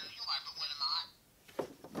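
Talking Pee-wee Herman doll (2001 edition) playing a recorded voice phrase through its small built-in speaker: about a second of thin, small-speaker voice, stopping about halfway through.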